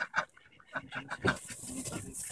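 White domestic ducks quacking, a run of short calls in quick succession.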